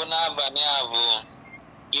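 Speech: a person talking for about a second, then a short pause.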